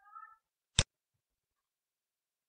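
A single sharp computer mouse click a little under a second in, one of the clicks that trim lines in a CAD sketch. Just before it, at the start, there is a brief faint high-pitched cry.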